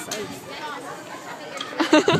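Chatter of children's voices, with a louder burst of voices near the end.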